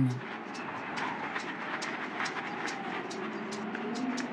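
Footsteps of a column of people walking through snow: repeated crunching steps a few times a second over a steady hiss.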